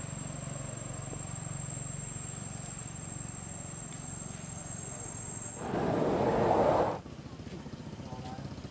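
Steady high-pitched insect buzz with a low hum beneath it. About six seconds in, a loud burst of rough noise lasts a little over a second, and then the buzz stops.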